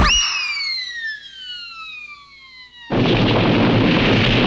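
Cartoon sound effects: a sharp hit, then a long descending whistle as a character is sent flying, then a sudden loud noisy crash about three seconds in.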